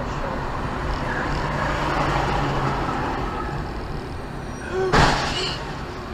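Steady road and engine noise heard from inside a moving car, then a single sharp, loud crash about five seconds in as a truck hits a bus just ahead.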